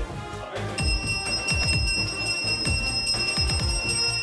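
Temple puja music: a steady beat of drum strikes, joined about a second in by a bell rung continuously, giving a sustained high ringing.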